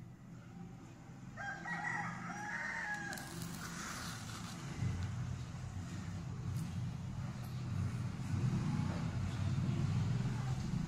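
A rooster crows once, starting about a second and a half in and lasting about a second and a half, over a steady low hum.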